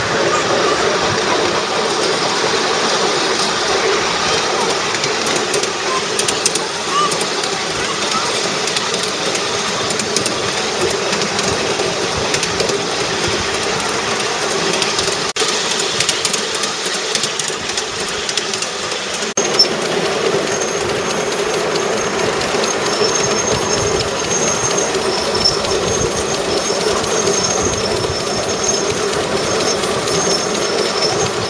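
Miniature ride-on train running along its small-gauge track, a steady rumble and clatter of wheels on rail. In the second half a thin high-pitched squeal comes and goes.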